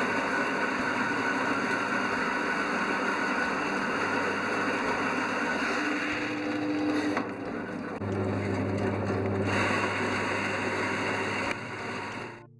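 Small electric anther-separating machine (a bud 'thresher') running steadily with a low hum as plum flower buds are fed in and tumbled inside to strip the anthers for pollen collection. About eight seconds in the low hum grows louder, and the sound stops near the end.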